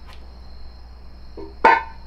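Crickets chirring steadily in a thin high band over a low background hum. Near the end, a man lets out a loud, drawn-out "gosh."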